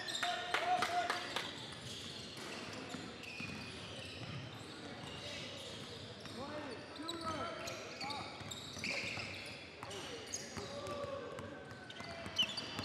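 Basketball bouncing and being dribbled on a hardwood gym floor, loudest in a run of sharp thuds about a second in, with short squeaks and the murmur of voices echoing around the hall.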